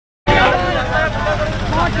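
Several men's voices calling out over one another, over a steady low droning hum. It all starts abruptly just after the start.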